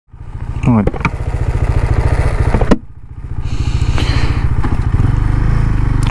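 KTM 390 Adventure's single-cylinder engine idling with a rapid, even pulse; a sharp click comes just under three seconds in, the engine sounds quieter for a moment, then runs on at a smoother, steadier note near the end.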